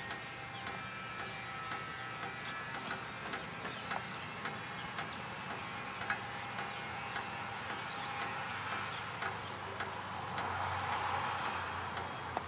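Outdoor ambience: a steady background hiss with faint bird chirps, scattered light clicks, and a swell of noise near the end.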